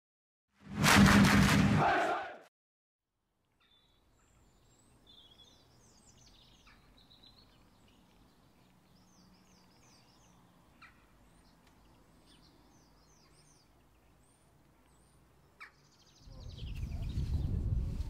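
A loud intro sound effect about two seconds long at the opening, then after a short silence faint birdsong, small songbirds chirping in repeated short phrases over quiet outdoor ambience. Near the end, louder outdoor noise with voices comes in.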